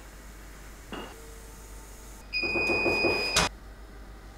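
Electric motor of a scissor car lift running for about a second, a steady whine with a high tone, cutting off with a click.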